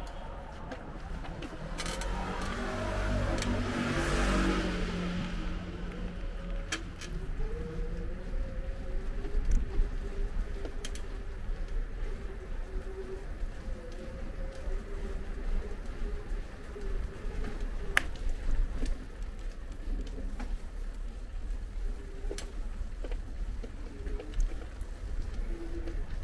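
A motor vehicle passes close by, loudest about four seconds in, its engine pitch falling as it goes. Then comes a faint, wavering low hum with a few sharp clicks.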